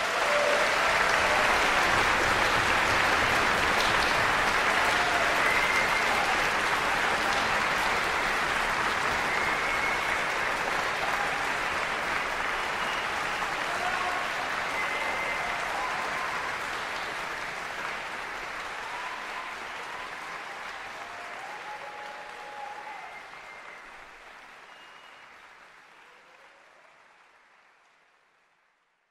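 Concert audience applauding at the end of a performance: dense, steady clapping that fades out gradually over the last ten seconds or so.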